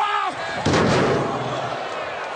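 A wrestler's body slammed into steel ring steps: one loud crash about two thirds of a second in, with a short ring-out, over arena crowd noise.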